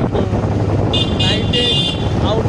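A vehicle horn sounds for about a second, starting about halfway through, over a steady low rumble of wind on the microphone and traffic.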